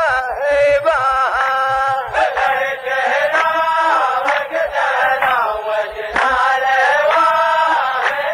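A row of men chanting a line of verse in unison, the sung refrain of a Saudi muhawarah poetic duel, the phrases gliding up and down with short breaks. Low thumps sound now and then under the chant.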